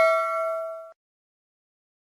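A bell-like ding sound effect for an animated notification bell: one struck, ringing chime dying away, then cutting off suddenly about a second in.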